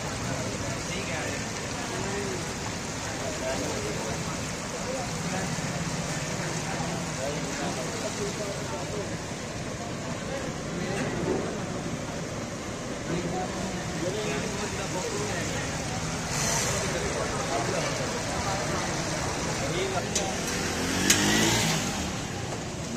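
Busy street-food stall ambience: indistinct voices over steady road-traffic noise, with a brief louder rush of noise partway through and a sharp click near the end.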